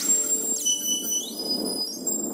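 Electronic sound-design sting of a record label's audio logo: thin, high synthesized tones that step between pitches over a crackling noise bed.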